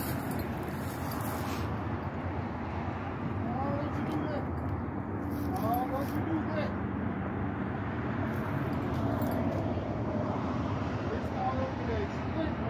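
Faint, unintelligible voices over a steady low rumble.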